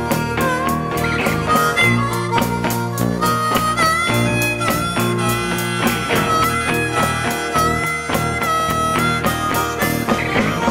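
Live blues harmonica solo with bending, sliding notes, over strummed acoustic guitars, electric guitar and bass, with a steady snare and hi-hat beat.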